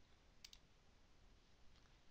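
Near silence with one faint computer mouse click about half a second in.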